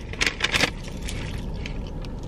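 A few short crinkling clicks in the first half second or so, from handling a paper fast-food wrapper. Under them is a steady low hum of a car with its engine and air conditioning running.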